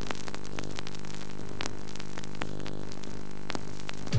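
Steady electrical hum with many overtones under a hiss of static, with scattered faint clicks: line noise on an analog video recording's soundtrack.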